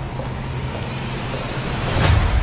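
Trailer sound-design swell: a steady low rumble under a hiss that slowly builds in loudness, with a hit right at the end.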